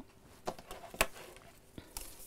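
A few soft clicks and taps as a tape measure and a rotary cutter are set down on a wooden worktable, the sharpest about a second in.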